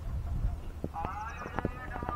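Wind rumbling on the microphone. From about a second in there is a quick run of light knocks and a distant raised voice calling out.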